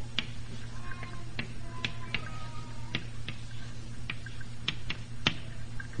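Scattered light clicks and taps, irregularly spaced, over the steady low mains hum and hiss of an old tape recording.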